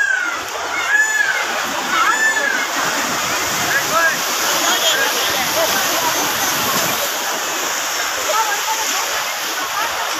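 Surf washing onto a beach under the steady babble of a large crowd of bathers, many voices calling and shouting at once. Three short, high rising-and-falling calls come about a second apart near the start.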